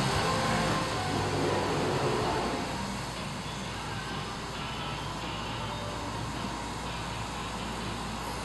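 Steady hum and hiss of brewhouse machinery, with faint music fading out over the first three seconds.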